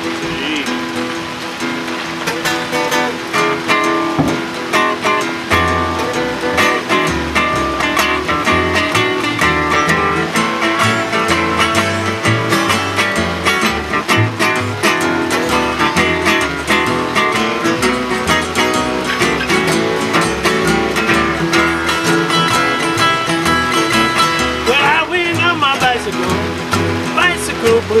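Acoustic guitars strumming an instrumental blues. An upright bass comes in with plucked low notes about five seconds in.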